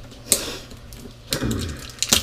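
A black plastic container lid being twisted by hand: a sharp plastic click about a third of a second in, then a stretch of scraping and rattling from a little past the middle.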